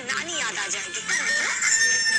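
TV drama soundtrack played through a phone's speaker: a brief voice over background music, then a long, held, high-pitched sound effect starting about a second in.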